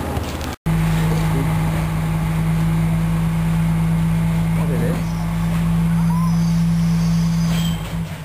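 A loud, steady low hum of a motor vehicle engine running on the street, beginning after a brief dropout about half a second in and holding one pitch until near the end.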